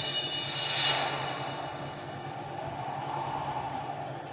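Dramatic background score: a sustained droning pad with a whooshing swell about a second in.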